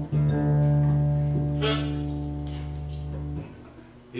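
Acoustic guitar's open strings struck once and left ringing as a slowly fading chord while the guitarist turns a tuning peg to tune. The ringing is damped about three and a half seconds in.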